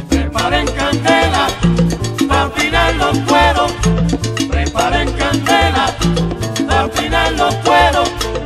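Instrumental passage of a salsa recording: a steady syncopated bass line and percussion under the band's melodic lines, with no singing.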